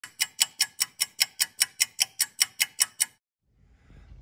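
Stopwatch ticking, sharp even ticks about five a second, stopping a little after three seconds in.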